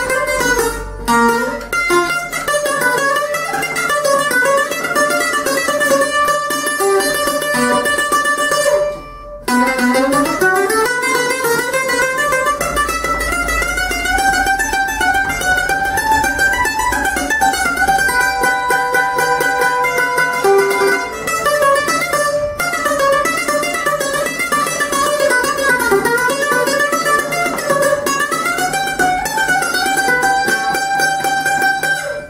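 Six-string (three-course trichordo) Greek bouzouki built by Tasos Theodorakis, played solo with a pick in quick melodic runs. There is a brief break about nine seconds in, then a note slides upward.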